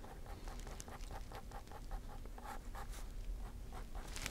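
Fine-tip ink pen scratching on sketchbook paper in a rapid series of short strokes, drawing line after line; faint.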